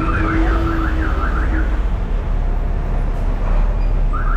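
A warbling electronic alarm, fast rising-and-falling chirps, sounds over a steady rumble of street traffic and stops a little under two seconds in.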